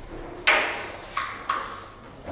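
Table tennis ball clicking sharply against hard surfaces three times, each click with a brief ring. The first, about half a second in, is the loudest, and the other two follow close together a little after a second.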